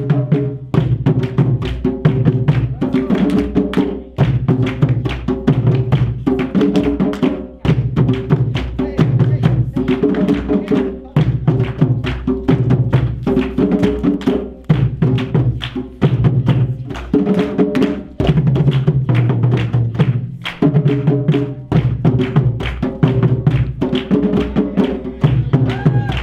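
Live African drum ensemble: djembe-style hand drums struck with bare hands and a stick in a fast, steady rhythm. The pattern repeats about every two seconds.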